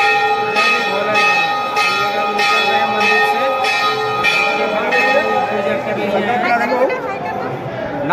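A temple bell rung over and over, a fresh strike about every 0.6 s so that its ringing runs on without a break, fading out about six seconds in.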